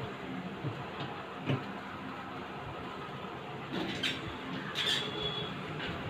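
Handling noise: a few scattered soft knocks and scrapes of hands working cables and plastic equipment, over a steady background rumble and hiss.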